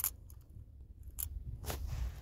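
Faint, steady low hum with a soft click at the start and two more a little past halfway.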